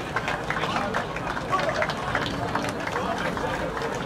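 Many voices talking and calling at once from a group of rugby players and officials gathered on an outdoor pitch, with no single voice standing out.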